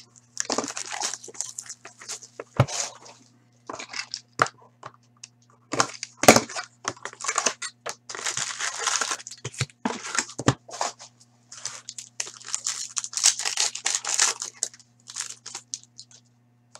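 Wrapping and packs of a hockey card hobby box being torn and crinkled open in repeated bursts, with cardboard flaps and cards handled and a couple of sharp taps. A low steady hum runs underneath.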